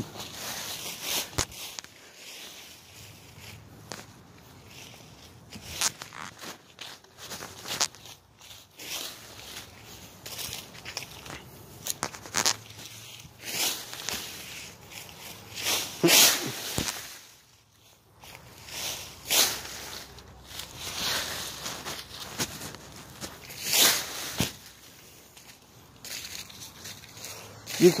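Dry fallen leaves rustling and crunching in irregular swishes a second or two apart as someone walks and shuffles through them.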